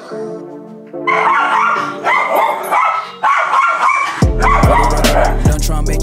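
Small schnauzer howling and yipping in a string of short calls from about a second in, over soft background music. Near the end a hip-hop track with a heavy bass beat comes in.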